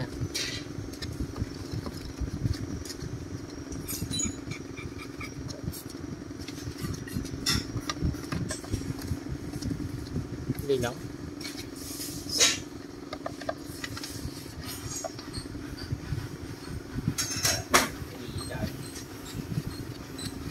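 Steady low mechanical hum with scattered metal clinks and knocks from small engine parts being handled, the loudest about twelve and seventeen seconds in.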